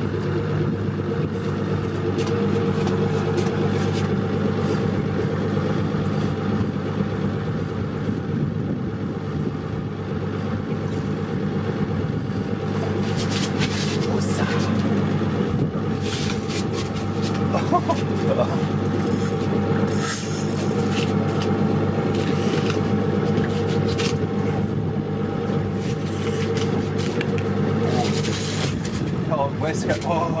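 Evinrude outboard motor idling with a steady low hum. Scattered clicks and a couple of short hisses come in the second half.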